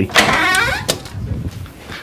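Wooden door being pushed open, its hinges creaking with a wavering, shifting pitch for about half a second, then a single sharp click near the middle.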